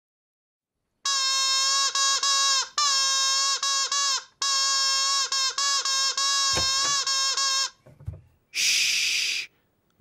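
A toy trumpet blown in a string of loud, reedy held notes with short breaks, for about six seconds. A couple of low thumps follow, then a short hiss near the end.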